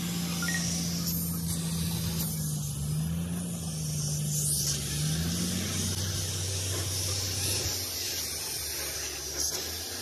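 Compressed-air cup spray gun hissing steadily as it sprays coating onto a brake-drum casting mould. A steady low hum runs underneath and drops in pitch about six seconds in.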